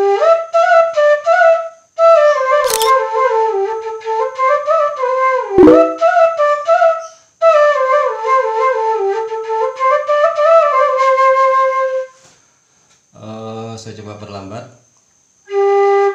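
Bamboo suling flute in G playing a melody in three phrases, the notes tongued and sliding between pitches, with a short break about two seconds in. It pauses after about twelve seconds, and a single steady low note is held near the end.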